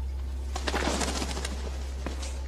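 Steady low engine rumble of a heavy military vehicle, with faint rattling clicks about a second in.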